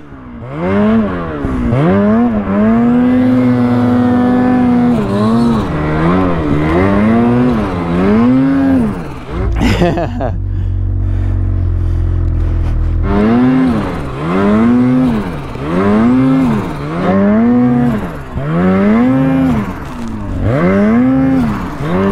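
Ski-Doo two-stroke snowmobile engine revved up and down over and over, about once a second, as a sled stuck in deep snow is rocked to get it free. It settles to a steadier low rumble for a few seconds in the middle, with a sharp click just before.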